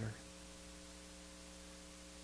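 Faint, steady electrical mains hum of several fixed tones over a light hiss.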